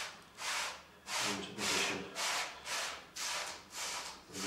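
A foam block rubbed back and forth over masking film laid on a flat sheet, pressing the mask down. It makes repeated short rubbing strokes, about two a second.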